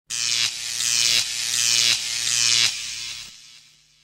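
A buzzing sound effect in four swells of about three-quarters of a second each, with a steady low hum under a bright hiss. It fades out over the last second.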